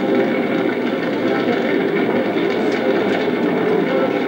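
Steady, dense dramatic soundtrack: sustained music and a continuous rumbling drone with no pauses.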